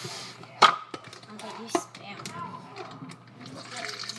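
Kitchen things being handled on a counter: a sharp clack just over half a second in, a lighter knock near two seconds, and low clatter between.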